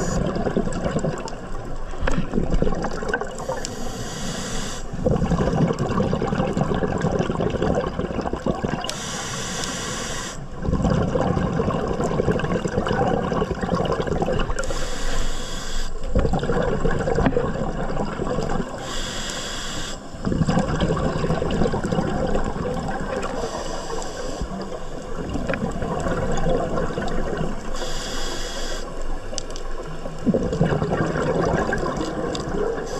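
Scuba diver breathing through a regulator underwater: six breaths, each a short hissing inhale followed by a longer gush of exhaust bubbles, about one breath every five seconds.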